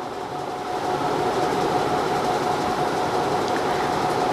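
A steady machine whoosh with a constant whine running through it, swelling a little about a second in.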